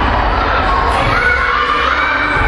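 Wrestling audience shouting and cheering steadily, many of the voices high and young, like children's.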